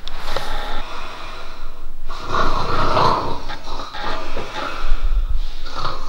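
A sleeping person snoring in slow, long breaths a couple of seconds each, with a low thump near the end.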